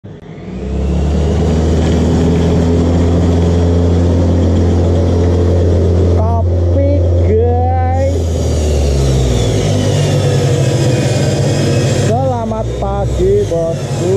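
A steady, loud low mechanical hum of a running motor or engine, which shifts to a slightly higher pitch about nine seconds in. A person's voice is heard briefly around six to eight seconds in and again near the end.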